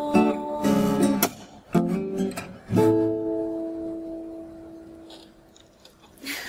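Taylor acoustic guitar strumming the closing chords of a song: a few quick strums, then a final chord about three seconds in that rings out and slowly fades away.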